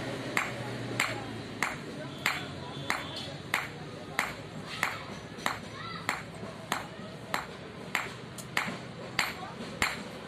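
A hand hammer forging a red-hot steel knife blade on a steel anvil, striking steadily about one and a half times a second. Each blow is a sharp, ringing ping.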